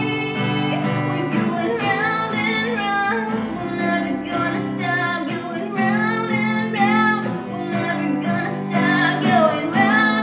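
A woman singing a pop melody over acoustic guitar.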